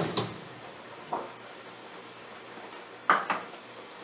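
A Russian legless lizard (sheltopusik) feeding on a roach next to its ceramic dish makes a few short, sharp clicks and knocks: one at the start, one about a second in, and a quick pair near the end.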